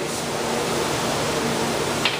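A steady, even rushing noise with nothing else standing out.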